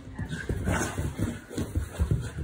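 A dog's paws thudding and scrabbling on upholstered couch cushions as it turns and paws at them: a run of irregular soft thumps.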